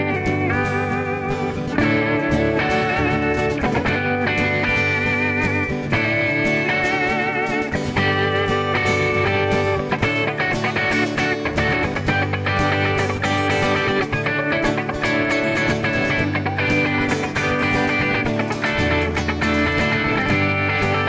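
Instrumental break of a live song: an electric guitar plays a lead line of held, bent notes with wavering vibrato, over strummed acoustic guitar and a cajón beat.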